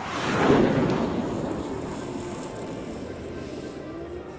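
A whooshing, rumbling sound effect, edited in over the picture, that swells to a loud peak about half a second in and then slowly dies away, with faint music underneath.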